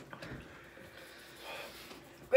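Faint breathing from people whose mouths are burning from a super-hot pepper chip, with a slight rise about a second and a half in.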